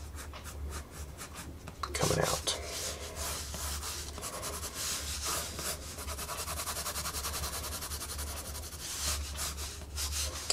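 Prismacolor Col-Erase colored pencil scratching on Bristol board in quick back-and-forth shading strokes, busiest from about two seconds in until near the end.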